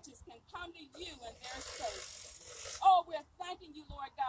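A woman's voice speaking into a handheld microphone, amplified through a small portable loudspeaker.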